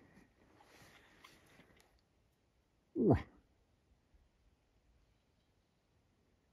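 A single short moose call about three seconds in: a loud grunt that falls steeply in pitch. Faint rustling comes before it.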